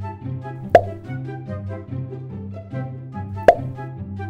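Background music with a steady bass line, with a cartoon 'boop' pop sound effect played twice, about a second in and again near the end, matching taps on a dog's nose.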